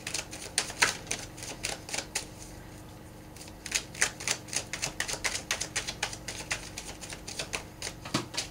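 Tarot deck being shuffled by hand: a run of light, irregular card clicks and taps, several a second, with a short lull about two seconds in.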